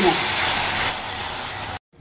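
Onion, tomato and garlic paste sizzling in hot oil in a kadai as it is stirred with a spatula: the masala being fried down. The sizzle eases a little about a second in and cuts off abruptly just before the end.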